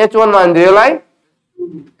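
A man's voice drawing out a word, its pitch wavering, for about the first second, with a short spoken sound near the end.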